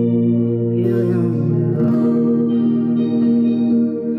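Steel-string guitar playing long, ringing chords in an instrumental passage, the chord changing near the start and again about two seconds in.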